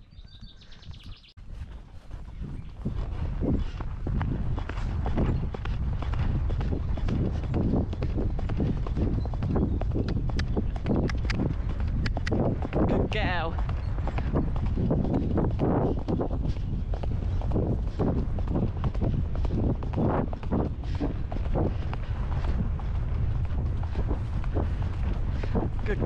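Horse moving at a fast pace on grass, its hoofbeats heard through a steady low wind rumble on the saddle-mounted action camera's microphone, which starts about two seconds in.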